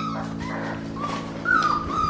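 Four-week-old golden retriever puppies whimpering: thin, high whines, with a longer drawn-out one from about halfway through.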